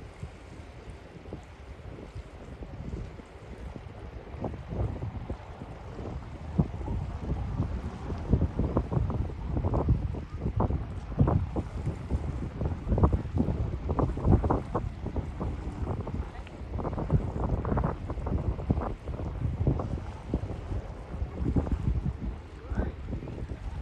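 Sea wind buffeting the microphone in gusts, faint at first and growing stronger from about four seconds in.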